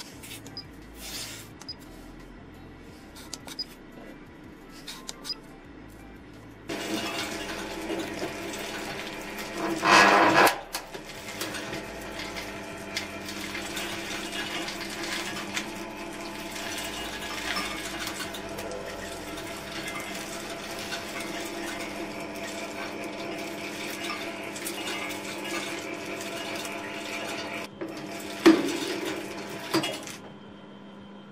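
Screw-feed auger of a multi-fuel pellet boiler starting about seven seconds in and running steadily with a low hum, drawing whole faba beans down from the hopper. There is a louder burst about ten seconds in and a short sharp knock near the end. Before the auger starts, a few faint clicks are heard.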